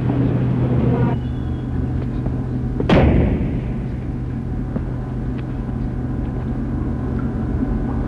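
A single loud thud about three seconds in, most likely a door shutting, that rings on briefly over a steady low hum.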